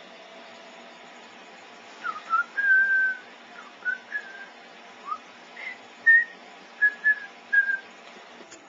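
A person whistling a short tune: a string of clear notes beginning about two seconds in, one held for about half a second, the rest short and quick.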